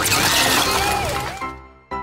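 A watermelon bursting as a car tyre rolls over and crushes it: a loud smash that fades out after about a second and a half, with music underneath.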